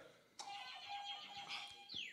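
Faint electronic quiz sound effect: a steady tone for about a second and a half, then a falling swoop near the end as a contestant's buzzer goes off.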